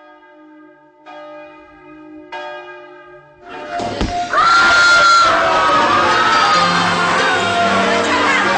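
Three bell-like chimes about a second apart, each ringing on, then from about three and a half seconds a sudden loud mix of music and a crowd shouting.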